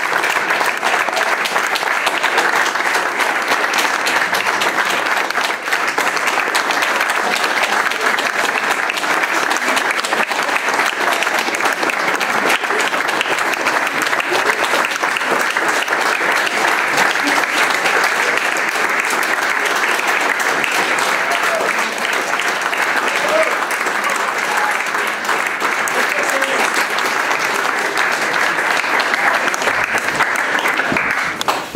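Audience applauding, a dense, steady clapping that continues without a break.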